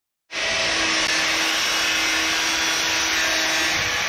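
Electric angle grinder running steadily at a constant pitch.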